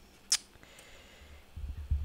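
Handling noise at a turntable: one short, sharp click about a third of a second in, then a few dull, low bumps near the end.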